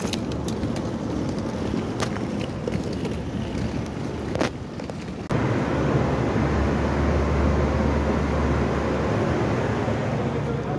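Scattered clicks over steady outdoor noise, then, after an abrupt cut about five seconds in, a steady low rumble of a wheeled suitcase rolling across a tiled floor.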